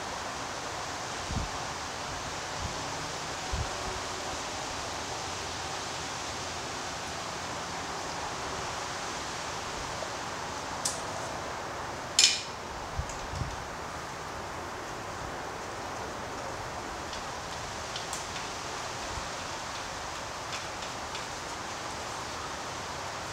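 Hand tools and metal engine parts clinking and knocking now and then over a steady background hiss, as an engine is worked on during disassembly. The loudest is a single sharp metallic clink about twelve seconds in; a few duller low knocks come early on and just after it.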